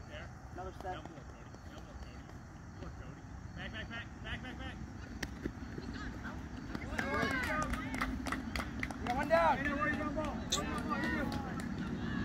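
Voices of players and spectators calling out across a baseball field, growing louder from about seven seconds in, over a steady low rumble.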